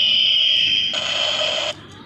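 Battery-powered toy gun's electronic firing sound effect: a high tone sliding slowly down in pitch, then about a second in a harsh buzz that cuts off suddenly near the end. The gun is running on AA batteries that have just been recharged.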